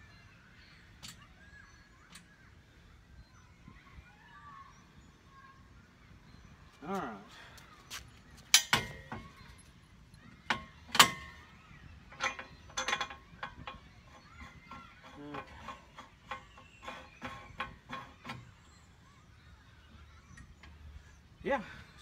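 Steel swing-away arm of a hitch-mounted cargo carrier being swung and pushed into place: after a quiet stretch, sharp metal clanks, the loudest about halfway through, followed by a run of lighter clicks and rattles as it settles.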